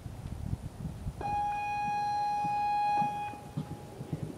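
Show-jumping start signal: a steady electronic buzzer tone of about two seconds, starting a little over a second in, telling the rider the round may begin. Soft hoofbeats of the horse trotting on the sand footing go on under it.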